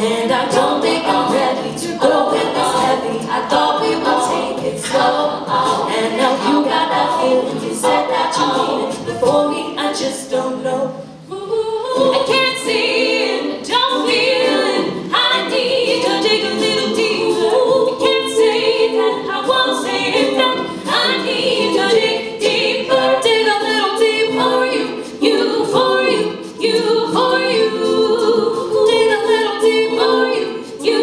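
All-female a cappella group singing in layered harmony into microphones, with a beatboxed vocal-percussion beat under the voices. The sound thins briefly about eleven seconds in, then the full group comes back in.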